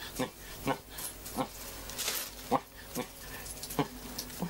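A man's short low vocal sounds, one every half second to a second, muttered while counting money, with a plastic bag rustling around the middle.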